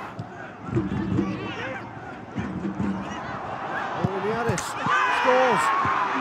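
Voices talking over stadium background noise. The noise grows louder about five seconds in, where one voice rises and holds a high, drawn-out pitch.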